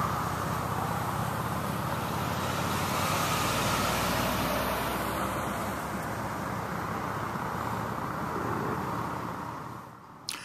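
Road traffic: cars passing with a steady rush of tyre noise over a low engine hum, easing off near the end.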